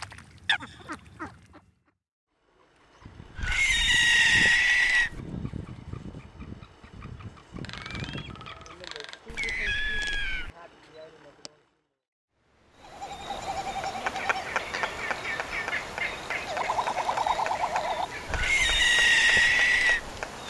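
Short Eurasian coot calls, then a run of male frigatebird calls: loud calls with several stacked tones about three seconds in, near the ten-second mark, and again near the end. In the later part a fast rattling drum sounds for about a second, over a steady outdoor hiss.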